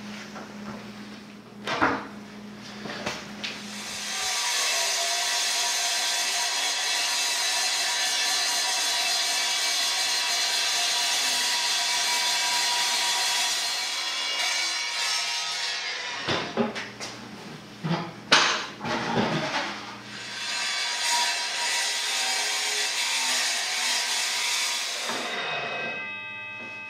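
Evolution steel-cutting miter saw cutting through square steel tube: a steady, ringing whine made of several tones that starts about four seconds in, holds for about ten seconds and then fades. A few sharp clanks follow as the steel is handled, then a shorter, weaker stretch of the same whine near the end.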